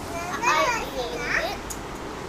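A young child speaking briefly in a high voice, two short utterances about half a second apart.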